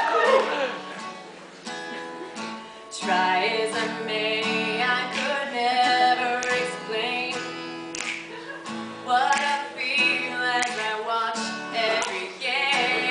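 Steel-string acoustic guitar strummed in chords, played live.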